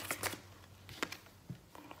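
A tarot deck being shuffled by hand: a brief rustle of cards in the first half second, then a few faint card taps.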